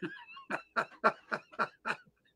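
A man laughing heartily in a quick run of short 'ha' bursts, about four a second.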